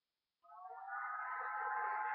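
A girl's voice holding one long, slightly rising hum as she hesitates, starting about half a second in after a brief silence.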